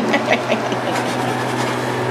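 Steady low hum with an even hiss, like a fan or motor running, with a few faint short sounds in the first half second.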